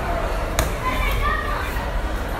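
Steady din of many children's voices and chatter in a large indoor play centre, with a sharp knock about half a second in.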